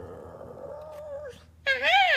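A long, steady, pitched vocal call, then near the end a louder call that rises and falls in pitch.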